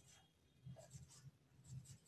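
Faint, short strokes of a marker pen writing on a whiteboard.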